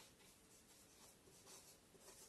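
Faint scratching of a marker pen writing on a whiteboard, in short strokes.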